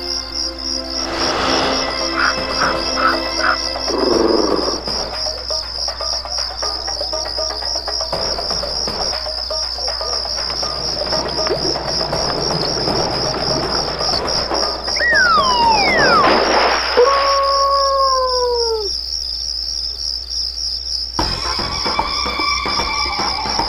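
Steady, evenly pulsing cricket chirring as a night-time sound effect, under soft background music. Near the end come a few falling, sliding tones.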